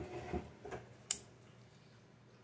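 A few faint clicks and light taps of handling close to the microphone, the sharpest a single click about a second in, then quiet room tone.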